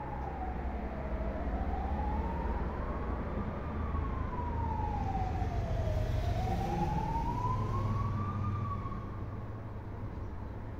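A siren wailing slowly, its pitch rising and falling about every five seconds, over a low rumble of traffic.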